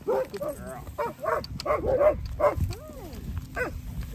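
Harnessed sled dogs yelping and whining in a quick string of short calls, each rising and falling in pitch, over most of the four seconds.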